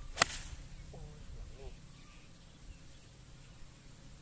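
A 6-iron striking a golf ball in a full swing: one sharp crack just after the start.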